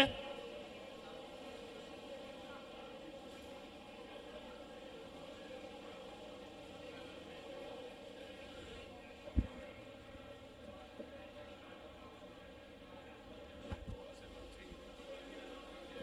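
Faint steady background hum with a single sharp knock about nine seconds in and a few small clicks near the end.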